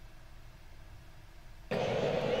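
A faint low hum of room tone, then, near the end, a baseball broadcast's audio cuts in suddenly and loudly with ballpark crowd noise.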